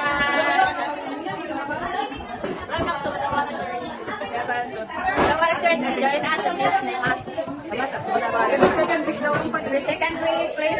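Several people chattering at once, their voices overlapping with no single speaker standing out.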